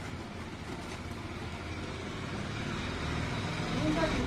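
A motor running steadily with a low hum, with people's voices faintly behind it and getting louder near the end.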